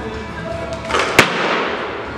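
Barbell power clean with bumper plates: a rush of noise during the pull, then one sharp bang about a second in as the bar is caught on the shoulders and the feet land, with a brief ringing tail. Background music plays throughout.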